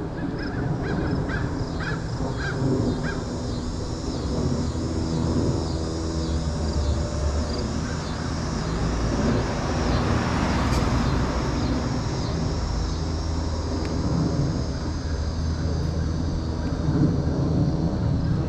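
Street ambience with a low, steady rumble: a car passes about ten seconds in, swelling and fading. In the first half a bird calls over and over in a quick, regular, high chirping pattern, with a few short harsher calls, like cawing, in the first three seconds.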